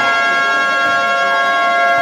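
Basketball game buzzer sounding one long, steady blast over crowd noise.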